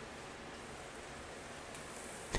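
Faint steady hiss with no distinct events: room tone.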